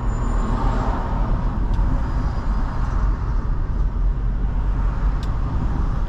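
Steady low rumble of a car's engine and tyres on the road, heard from inside the moving car. A faint click comes about five seconds in.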